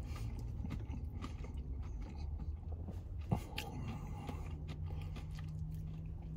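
A person chewing a mouthful of burger: faint soft mouth clicks, with one sharper click a little past halfway, over a steady low hum.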